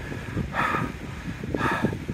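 Wind buffeting the microphone with a low rumble, broken by two short hissy sounds about half a second and a second and a half in.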